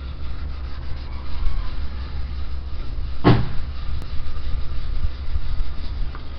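Hand scrubbing on a plastic car headlight lens with a baking-soda cleaning mix, over a steady low rumble. One short thump about three seconds in.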